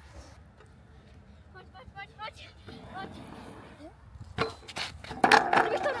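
A knock about four and a half seconds in, then a loud clatter near the end as a freestyle kick scooter crashes onto the asphalt pumptrack: the rider has bailed from a trick he didn't land.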